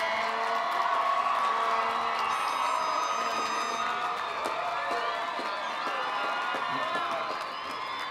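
Large stadium crowd cheering, whooping and clapping, a steady din of many voices that eases off slightly near the end.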